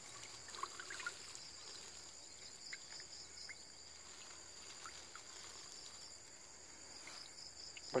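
Steady high-pitched chirring of insects, with a few faint drips of water.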